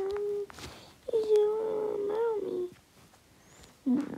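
A voice holding long sung vowel notes with no words: one note ends about half a second in, and a second, longer note with a slight waver follows about a second in and lasts over a second and a half.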